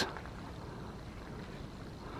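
Faint, steady outdoor background noise with no distinct event: a low, even rumble and hiss.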